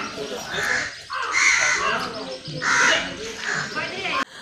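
A bird gives about four harsh calls, the longest and loudest about a second in, over low voices.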